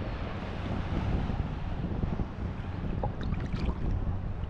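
Choppy shallow sea water sloshing and lapping around a camera held at the surface, with wind buffeting the microphone.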